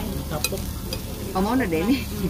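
Slices of beef sizzling on a tabletop yakiniku grill. A single sharp metal click of the tongs comes about half a second in.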